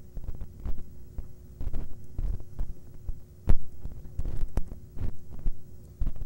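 Irregular taps and clicks on a laptop keyboard, with dull low thumps, the loudest about three and a half seconds in, heard through the presenter's microphone over a steady low hum.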